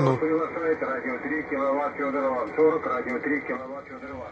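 A voice transmission on the 40-metre amateur band, received by an RTL-SDR Blog V3 dongle and demodulated in SDR Sharp: continuous talking with a narrow, muffled sound that has no treble, typical of single-sideband radio voice.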